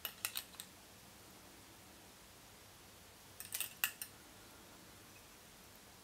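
Two short clusters of small, sharp clicks, one at the start and one a little past the middle. They come from hackle pliers and a stripped peacock quill being wound around a fly hook held in a tying vise.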